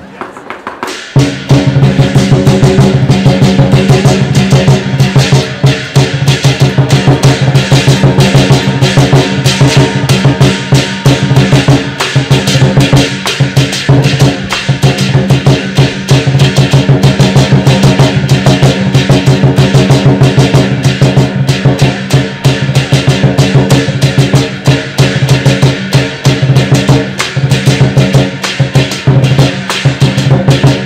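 Chinese lion dance drum and its accompanying percussion played fast and loud in a steady driving rhythm, starting about a second in.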